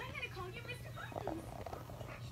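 Faint voices over a low, steady hum.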